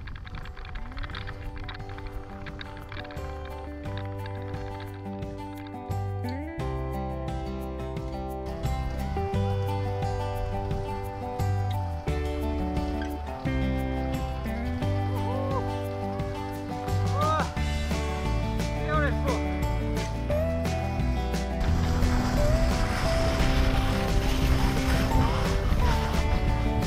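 Background music: sustained chords over a bass line that moves in steps, growing louder toward the end.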